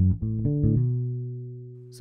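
Electric bass guitar plucked in a quick run of low notes from the B minor pentatonic scale, ending on one held note that rings out and fades over the last second.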